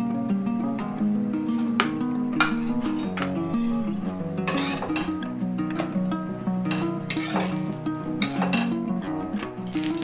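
Background music: a melody of short, evenly held notes, with a few sharp clicks now and then.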